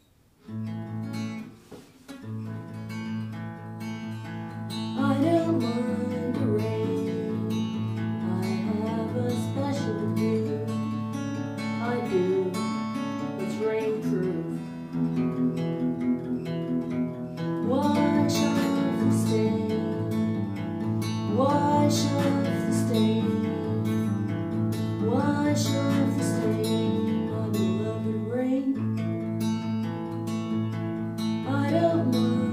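Acoustic guitar played in steady chords, starting about half a second in, with a voice singing along over it from about five seconds in.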